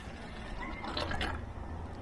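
Faint mechanical clicks and rattles over a low, steady hiss.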